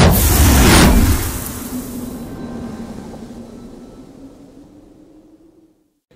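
Intro sound effect: a loud whoosh-and-boom hit in the first second, followed by a low steady tone that slowly fades to nothing.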